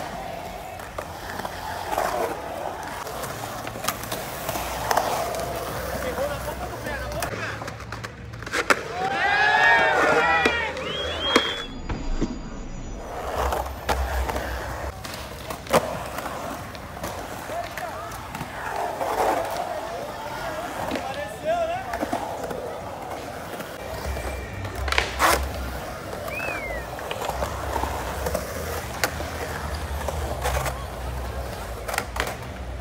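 Skateboard riding a concrete bowl: a low rumble of wheels rolling on concrete, which swells and fades as the board carves, broken by scattered sharp clacks of the board and trucks.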